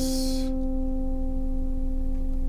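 Acoustic guitar chord ringing on after being played, its notes sustaining steadily as the fretting hand holds a barred shape.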